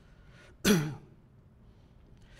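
A man clears his throat with one short cough, about half a second in.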